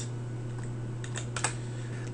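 A few scattered keystrokes on a computer keyboard, sharp single clicks, over a steady low hum.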